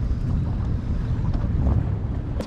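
Wind buffeting the microphone at the bow of a boat under way, a steady low rumble with the boat's running noise underneath.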